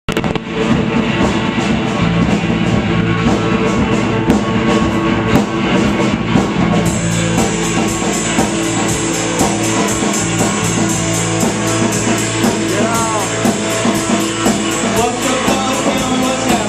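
Live rock band playing electric guitar and drum kit, loud and steady. About seven seconds in, cymbals join with a fast, even beat.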